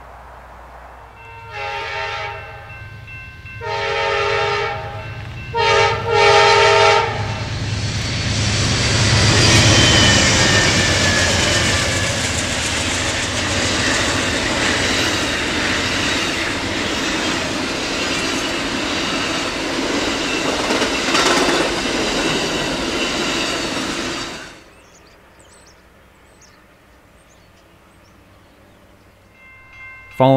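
Amtrak passenger train's locomotive horn sounding the grade-crossing pattern (long, long, short, long), then the double-deck Superliner train passing close by with a loud, steady rush of wheels on rail for about seventeen seconds. The train noise cuts off suddenly, leaving a low, quiet background.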